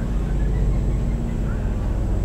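Low, steady rumbling background noise, with a few faint short chirps over it.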